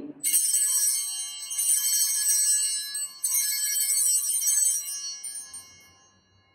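Altar bells (Sanctus bells) rung three times at the elevation of the chalice after the consecration, each ring a jangle of several high tones that fade out near the end.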